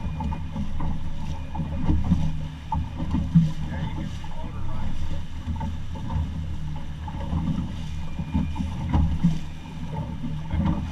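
Motorboat running across light chop: a steady low rumble of motor and hull, with irregular thumps as the hull meets the waves, the loudest about three and a half seconds and nine seconds in.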